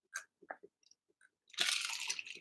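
A person drinking from a glass: a few soft gulping clicks, then a louder breathy rush about one and a half seconds in.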